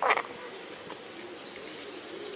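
A brief scraping burst right at the start as the test-light probe is worked against the ATV fuse-box terminal, followed by a faint, wavering buzz.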